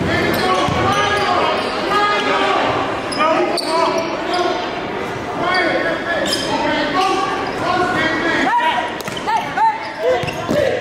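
Basketball dribbled on a gym floor, with many voices talking around it in a large, echoing gymnasium.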